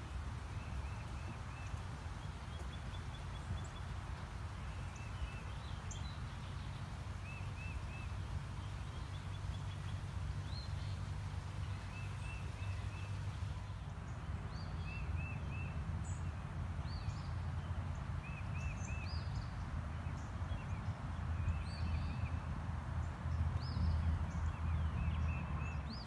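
Songbirds calling over the steady rush of flowing creek water: one bird repeats a short phrase of three or four quick notes every second or two, with other higher chirps scattered through.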